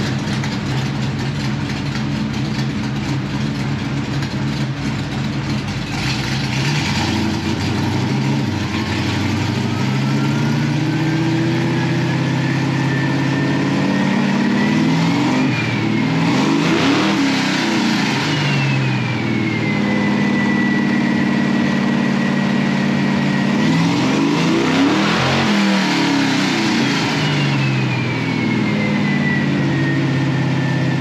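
Plymouth Superbird's 543-cubic-inch V8 running on a chassis dyno, revved up twice. A whine climbs slowly in pitch to a peak about halfway through, drops back and holds, then rises again to a second peak near the end and falls away.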